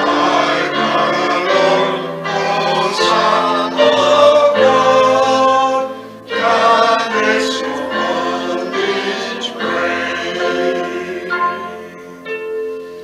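Choir singing a hymn in held, chordal phrases, with a brief break between phrases about six seconds in.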